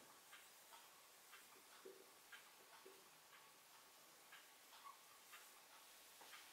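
Faint, irregular little ticks and short strokes of a marker pen writing on a whiteboard, about two a second, over near silence.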